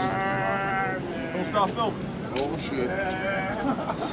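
A man's voice making loud, wavering cries without words: one held for about a second, then shorter sounds that slide up and down in pitch.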